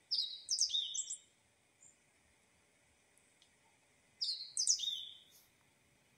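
A bird chirping: two short phrases of quick, high sliding notes, one right at the start and one about four seconds later.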